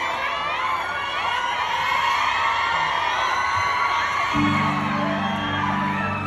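A crowd of fans screaming and cheering in many high, wavering voices. About four seconds in, a low, steady music chord comes in underneath.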